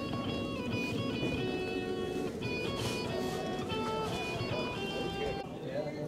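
Electric guitar playing a Christmas tune as a melody of held notes.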